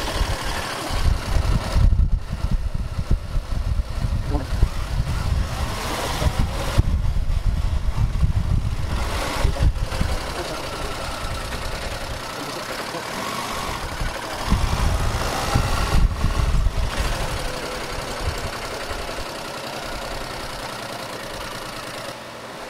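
Motorcycle riding slowly through town streets: the engine runs under steady road noise, with irregular low rumbling that eases off for a couple of seconds past the middle and then returns.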